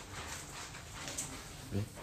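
A house cat making a brief low vocal sound near the end, over background noise.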